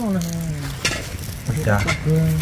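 Wood campfire crackling and sizzling, with a few sharp pops. A drawn-out vocal sound falls in pitch at the start, and another vocal sound begins near the end.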